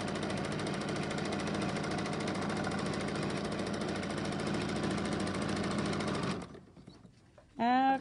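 Janome domestic sewing machine running at a fast, steady stitching rate during free-motion thread painting, stopping about six seconds in.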